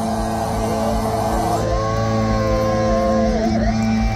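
Live black metal band letting a held chord ring out at the close of a song, with long sliding tones that bend up and level off over the sustained notes.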